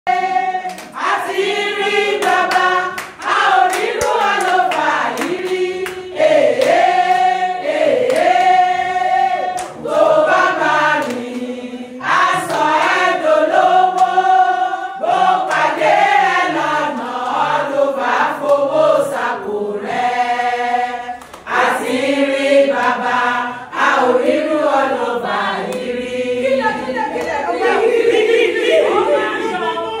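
A group of women singing a song together, with hand claps keeping time through the first half.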